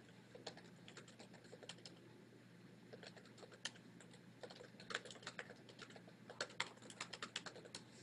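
Faint typing on a computer keyboard: scattered key clicks that come in quicker runs in the second half.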